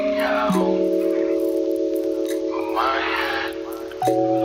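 Lo-fi hip-hop beat with held, mellow chords that change about half a second in. Short snatches of vocal sit over the chords near the start and again around three seconds in.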